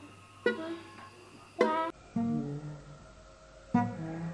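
Ukulele played by hand: sharp strummed chords that ring and die away about a second apart. Lower plucked notes follow in the second half, with one more chord near the end.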